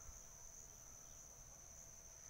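Faint, steady high-pitched insect drone from the orchard, one unbroken tone, over a faint low rumble.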